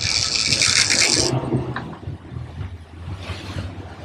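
Big-game trolling reel's clicker buzzing as line is pulled off by a striking small striped marlin, stopping abruptly after about a second; the outboard engines run steadily underneath.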